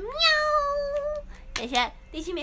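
A long, high meow-like call that rises and then holds steady for about a second, followed near the end by a short, wavering second call.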